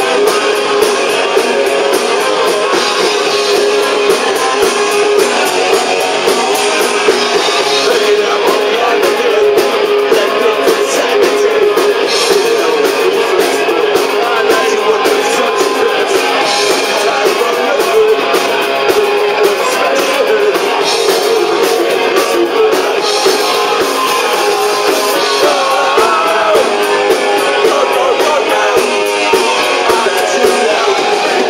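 A punk rock band playing live: distorted electric guitar and drums, loud and steady, with the cymbals growing busier about eight seconds in.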